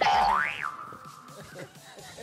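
Comic 'boing' sound effect: a whistle-like tone that glides quickly up, drops back and fades out within about a second and a half.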